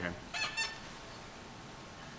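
A brief high-pitched squeak about a third of a second in, then quiet room tone.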